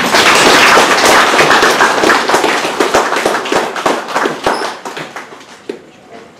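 Audience applauding, a dense clapping at first that thins to scattered claps and dies away near the end.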